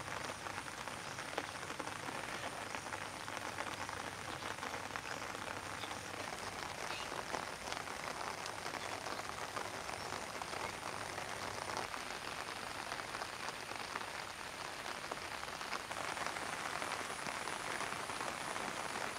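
Steady rain falling on surfaces, a dense even hiss of countless fine drops that grows slightly louder near the end.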